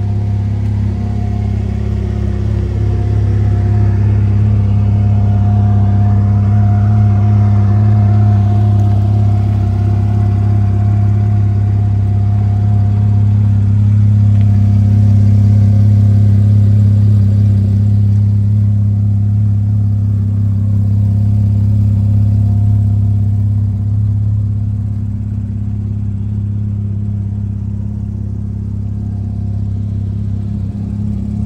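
Porsche Cayman R's 3.4-litre flat-six engine idling steadily, a deep, even hum with no revs.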